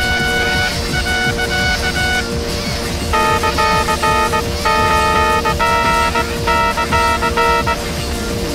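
Cartoon toy trumpet tooting a string of short held notes over background music, in layered, effects-processed cartoon audio; the tooting pauses about two seconds in, then resumes.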